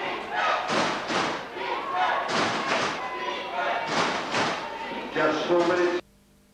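Voices in a rhythmic chant with heavy thumps, two hits at a time about every second and a half.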